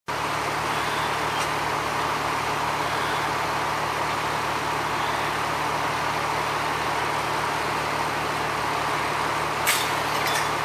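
Fire truck's diesel engine running steadily close by, a constant low hum, with a brief sharp click near the end.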